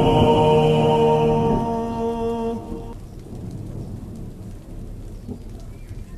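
The slowed nasheed's final vocal chord held and fading, over a bed of rain and low rolling thunder. About three seconds in the chord stops, and the rain and thunder carry on alone, much quieter.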